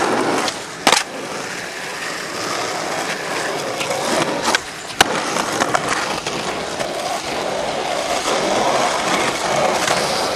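Skateboard wheels rolling on rough asphalt, with sharp clacks of the board hitting the ground about a second in and twice more around the middle.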